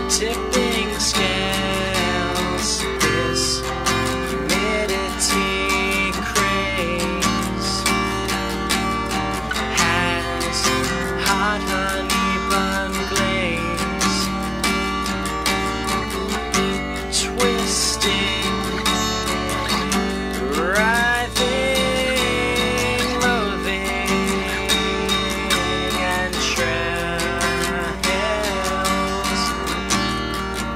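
Acoustic guitar strummed steadily, a solo instrumental passage without vocals.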